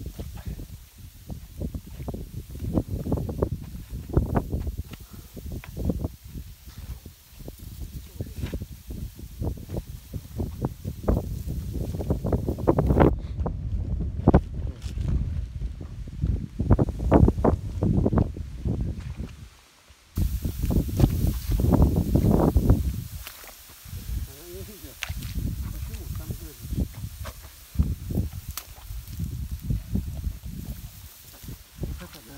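Irregular gusty rumbling on the microphone outdoors, with rustling in dry grass and indistinct voices.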